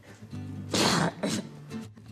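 A man's short, breathy throat sound about a second in, followed by a smaller one, over steady background music.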